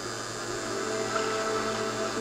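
Soft background music from a cartoon soundtrack: quiet held notes with no dialogue, played through laptop speakers and picked up by a phone.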